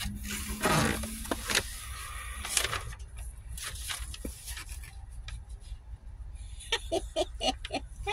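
Paper and cardboard rustling as a mailed box is opened and a sheet of paper is pulled out, in a few short bursts in the first three seconds. Near the end a woman gives a short wordless vocal sound.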